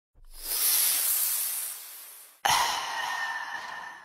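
A person sighing: two long, airy exhales, the second starting abruptly about halfway through and fading away.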